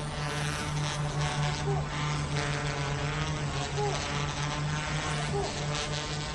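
Zero Zero Robotics Falcon V-shaped twin-rotor drone hovering: a steady low propeller hum.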